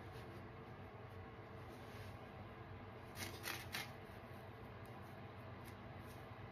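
Dry kitchen sponges being handled in a plastic basin, with a short run of scratchy rustles about halfway through over a faint steady background.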